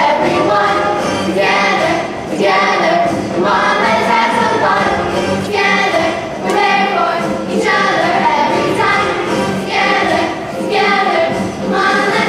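A school musical cast, mostly children, singing together in chorus over music.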